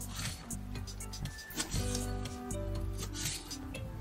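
Kitchen knife slicing a Korean green onion into thin strips on a plastic cutting board, a few separate cutting strokes, over background music with steady sustained tones.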